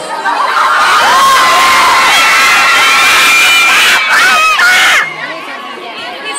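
A crowd of young fans screaming and cheering, many high-pitched voices overlapping. The screaming falls away sharply about five seconds in, leaving quieter chatter.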